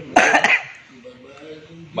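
A man's loud, harsh cough-like vocal burst right at the start, followed by quiet murmured speech.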